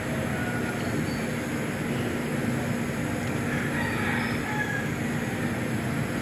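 Steady background hum and faint crowd murmur of a packed billiard hall, with no ball strikes.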